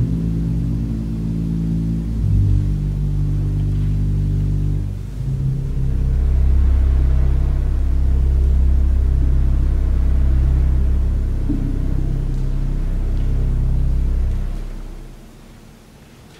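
Church pipe organ playing slow, sustained low chords that change every few seconds. A very deep pedal bass note comes in about five seconds in, and the sound dies away about a second before the end.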